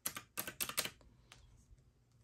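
Keys of a round-keyed desktop calculator being tapped to enter a sum: a quick run of about six clicks in the first second, then one more click a little later.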